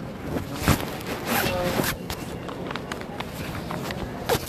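Handling noise from a phone camera carried while walking: rustling and scraping of clothing against the microphone, irregular knocks and footsteps. A sharp knock comes just under a second in, and a longer burst of rustling follows about a second later.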